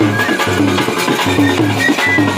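Bajantri folk band playing a Bhaderwahi tune: stick-beaten dhol drums keep a steady rhythm under clashing metal hand cymbals, with a wavering wind-instrument melody above.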